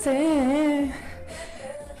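A woman's voice holds one wavering, drawn-out note for about a second over steady workout background music, which then carries on alone at a lower level.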